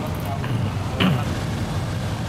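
Road traffic: a steady hum of passing cars and motorbikes, with a brief louder sound about halfway through.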